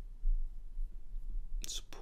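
A pause in a man's narration, with a low steady hum underneath and a short breathy intake of breath near the end, just before he speaks again.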